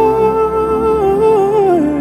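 A wordless vocal line, humming a long held melody over a soft sustained worship keyboard pad; the note steps down in pitch a few times near the end.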